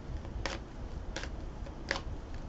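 A card deck being handled and shuffled: three short, crisp snaps about two-thirds of a second apart over low room noise.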